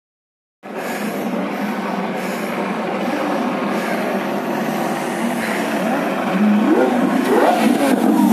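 A convoy of cars rolling past at low speed with steady engine and road noise. From about six seconds in, Lamborghini engines are revved again and again, rising and falling in pitch and growing louder as they pass close.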